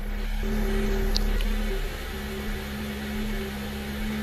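A steady low hum inside a Volkswagen's cabin, with two faint sustained tones that drop out briefly midway. There is one short high chirp about a second in.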